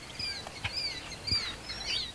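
Killdeer calling: a series of high, down-slurred notes repeated several times, growing louder in the second half.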